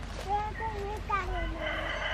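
A rooster crowing, a wavering call that falls off at the end, followed about halfway through by a longer, steadier crow.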